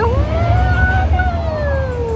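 One long, drawn-out vocal call that rises at the start, holds, then glides slowly down, over wind rumbling on the microphone.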